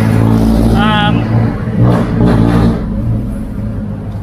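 A motor vehicle engine running with a steady low hum, easing off a little in the last second.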